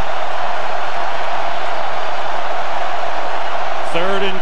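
A large stadium crowd making a steady, loud wall of noise as the offense sets up before the snap.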